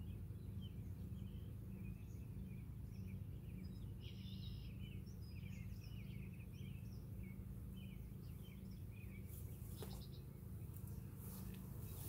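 Low steady hum of a mass of honeybees on the open hive, with songbirds chirping throughout and a few faint clicks near the end.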